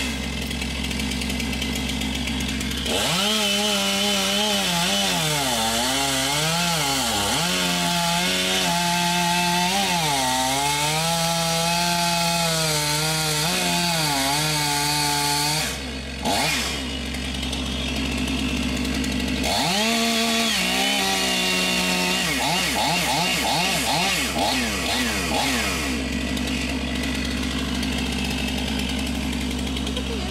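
Two-stroke gas chainsaw cutting a notch into a palm trunk: about three seconds in it revs up, and its pitch rises and falls as the chain loads in the cut. It drops off briefly around the middle, revs and cuts again for a few seconds, then runs more evenly near the end.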